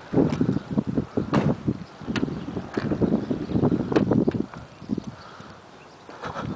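A foam-tipped window marker pressed and drawn across a car's rear glass, making irregular dull taps and rubbing as a letter is written, with a few sharper clicks. It goes quieter over the last second and a half.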